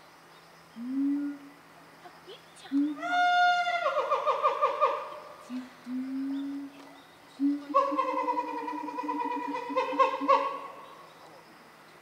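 Several drawn-out, pitched vocal calls, some high and wavering, in a few separate stretches of a second or more.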